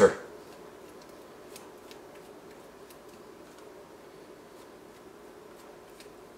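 Pastry brush dabbing and spreading egg wash over soft risen dough balls in a metal baking pan, faint with a few light ticks, over a low steady room hum.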